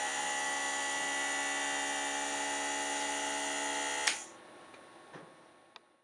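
Omron NE-C801KD compressor nebulizer running with a steady electric hum, then switched off with a click about four seconds in, its sound dying away.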